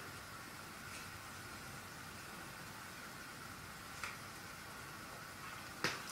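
Faint steady hiss of room tone, with a few faint soft rustles, about a second in and again around four seconds, as hair is gathered and tied up with an elastic.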